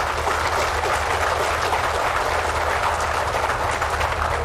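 Audience applauding: many hands clapping at once in a dense, steady stream.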